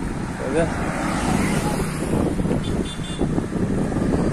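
Road traffic noise and a steady rushing heard from a moving bicycle on a highway, with a short snatch of voice about half a second in.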